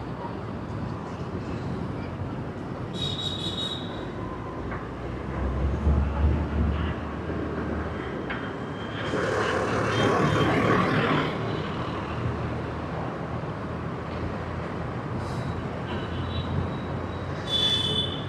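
Outdoor traffic noise: a steady rumble of passing vehicles, with one louder vehicle passing about nine to eleven seconds in.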